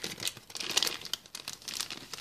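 Plastic foil blind-bag packet crinkling as it is torn open and pulled apart by hand, in quick irregular crackles.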